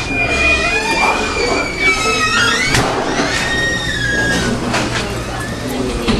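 Voices in a restaurant dining room, with a high, drawn-out voice gliding up and down in pitch through the first three seconds and again about three to four and a half seconds in.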